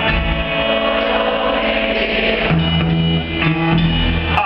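Live rock-and-roll band playing over the PA, with electric guitars, bass and drums in a steady, loud stretch of the song.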